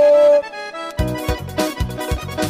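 Forró band music with accordion. A loud held note opens, there is a brief thinner lull, and then the band comes back in about a second in over a steady drum and bass beat.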